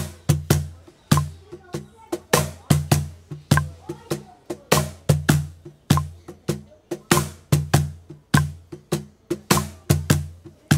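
Artisan Tango Line Grey Eucalyptus cajon played with bare hands in a slow forró xote groove at 50 BPM: deep bass tones alternating with sharp, bright slaps in an even repeating pattern of about two to three strokes a second.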